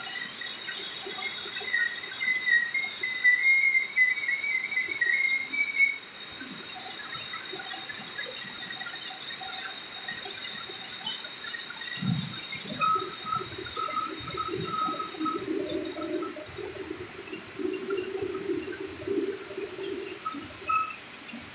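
Can palletizer and conveyors running on a canning line, a steady mechanical hum with thin high whines. A squeal rises in pitch during the first few seconds, short squeaks repeat later, and a heavier rumble sets in from about twelve seconds.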